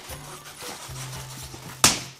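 Tape being picked at and peeled off the side of a cardboard model-train box by hand, with faint rubbing, then one short, sharp rip near the end as a strip tears free.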